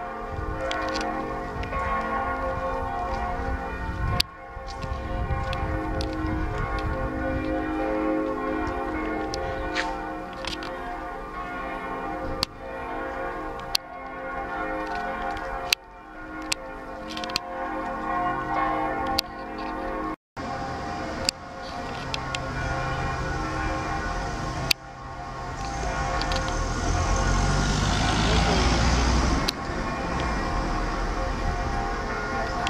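Church bells pealing, many overlapping ringing tones that sustain and blend. A low rumble builds up under them near the end.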